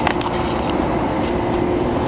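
Steady machinery hum with a constant low drone, and a light click just after the start.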